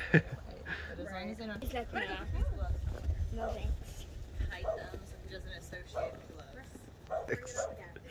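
Fox vocalizing in a few short, wavering whines scattered through the stretch, with a low rumble near the middle.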